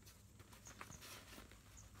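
Near silence, with a few faint clicks from the ground blind's window clamp and fabric being handled a little under a second in. Faint high chirps recur about once a second.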